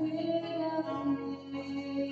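Music with a singing voice holding long, slow notes over an instrumental accompaniment, as in a hymn.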